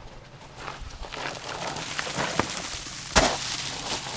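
Shoes scraping and sliding down a dusty rock face with loose grit crunching, then a sharp thud of a landing about three seconds in.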